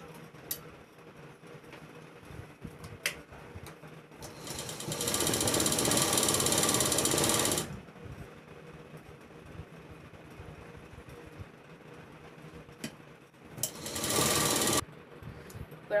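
Industrial lockstitch sewing machine running in two bursts of stitching, a run of about three seconds starting some four seconds in and a short one of about a second near the end. A few light clicks of the fabric being handled and positioned fall between the runs.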